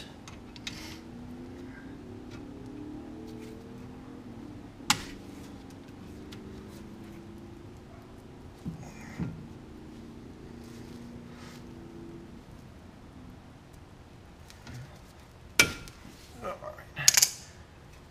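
Sparse metallic clicks and scrapes of pliers and gloved fingers working the cotter pin out of a 1980 Camaro's front spindle castle nut and spinning off the finger-tight nut: one sharp click about five seconds in, a few small knocks, and several sharp clicks near the end.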